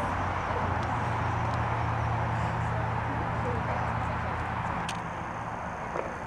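Indistinct murmur of people talking in the background over a steady low hum, with no clear voice standing out.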